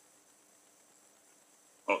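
Quiet room tone with a faint steady hum, then near the end a man's voice starts a word.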